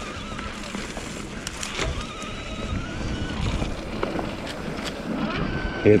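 Electric mountain bike riding over a leaf-covered dirt trail: steady rumble of the tyres and frame, a few sharp knocks from trail bumps, and a faint high whine from the 1000 W Bafang mid-drive motor pulling under the thumb throttle, rising slightly about two seconds in.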